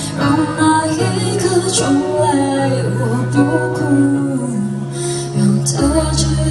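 A live band playing a slow Mandarin pop ballad: a steady bass line, guitar and keyboard under a woman singing into a microphone, with a cymbal crash about two seconds in and another near the end.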